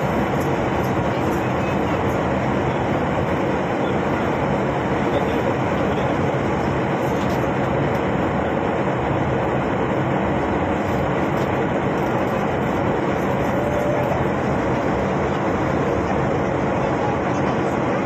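Airliner cabin noise at cruise: a steady, even rush of engine and airflow noise.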